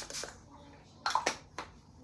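Several spritzes of a pump-mist setting spray bottle sprayed at the face: short hissing puffs, two at the start and a few more about a second in.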